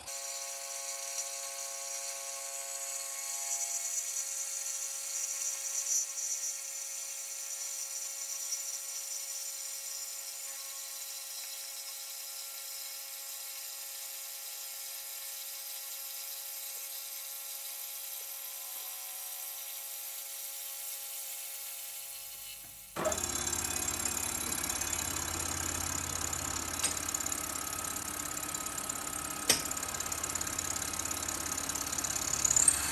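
A milling machine's spindle running with a 5/16 in end mill cutting through 5 mm steel angle: a steady machining whine with several fixed tones. About 23 seconds in, the sound changes abruptly to a rougher, lower running with a deeper rumble, and there is a sharp click near the end.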